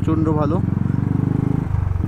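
Royal Enfield Classic 350's single-cylinder engine and exhaust running steadily under way, a fast even thump with a held pitch. The note changes briefly near the end.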